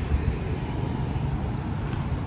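Low, steady rumble of city street traffic in the background.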